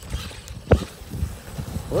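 Low, uneven rumbling with one sharp thump about three-quarters of a second in.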